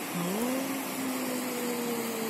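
Fast, shallow mountain river rushing steadily over stones. Just after the start a single long call comes in over it, rising briefly in pitch and then held level for about two seconds.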